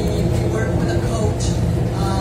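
Speech from the front of the room, indistinct, over a steady low rumble of room noise.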